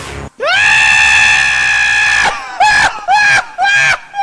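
A high-pitched scream held for about two seconds, followed by four short rising-and-falling yelps in quick succession. Background music cuts off just before the scream.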